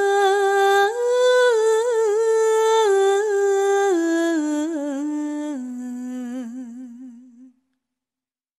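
A solo voice in a slow, ornamented melody of long held notes that step down in pitch over the phrase, fading out near the end.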